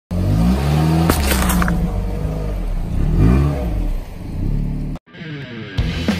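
Car engine running and revving as the car rolls onto a watermelon, with a sharp crack and clatter about a second in. The sound cuts off near the end and music begins.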